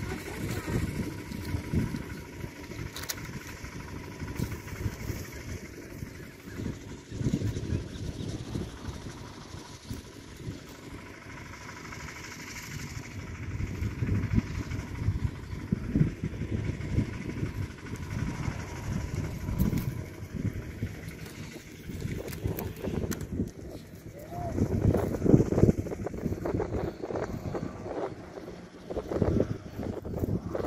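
Wind buffeting the microphone, an uneven low rumble that swells and fades in gusts and is strongest about twenty-five seconds in. A faint steady hum sits under it for the first ten seconds or so.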